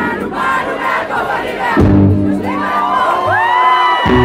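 Concert audience screaming and cheering, many high voices overlapping and rising, loudest in the second half. The band holds a low note from about two seconds in.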